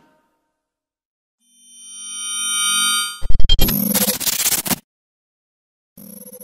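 Logo sting sound effect: a synthesized chord swells up for about a second and a half, then breaks into a sharp hit and a crackling burst that stops abruptly about a second and a half later.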